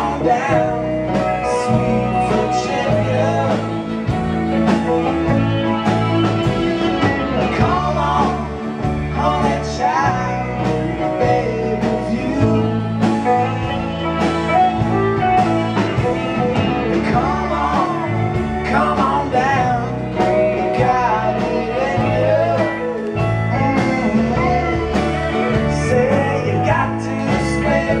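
A live band of acoustic guitar, electric guitar, bass guitar and drums playing a steady mid-tempo country-rock passage without lyrics, with lead notes that bend up and down in pitch over the top.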